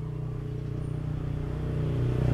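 A motor engine running steadily and growing louder, as if a vehicle is drawing nearer.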